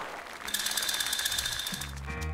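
An edited-in sound effect: a rapid, evenly pulsing ring with a steady high tone, lasting about a second and a half. Background music comes in near the end.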